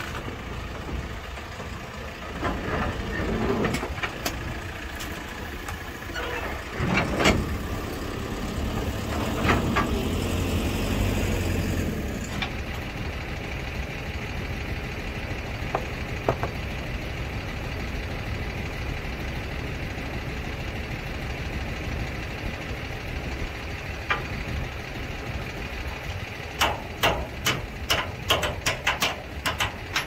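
Diesel engine of a backhoe loader running as it drives down steel trailer ramps, with heavy metallic knocks about 7 and 10 seconds in. After that a diesel engine idles steadily, and near the end a quick run of metal clicks and knocks comes from the trailer hitch as it is uncoupled.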